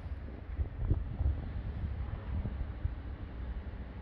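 Wind buffeting a handheld camera's microphone outdoors: an uneven low rumble that rises and falls.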